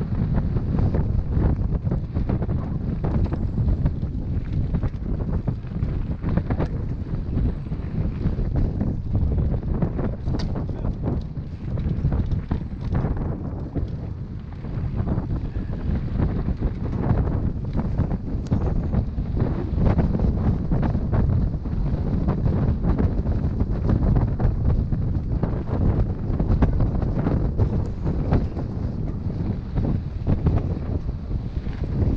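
Wind buffeting the microphone of a mountain biker riding downhill, with a constant low rumble and many quick clicks and rattles from the bike running over the rough dirt trail.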